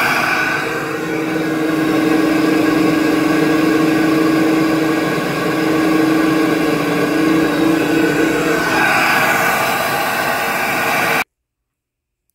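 SuperFlow flow bench running at about 28 inches of water test pressure, its blower motors drawing air through a Holley 850 carburetor, stub stack and intake into a cylinder head: a loud, steady rush of air with a humming tone. The hum wavers and drops out about three-quarters through, and the sound cuts off suddenly near the end.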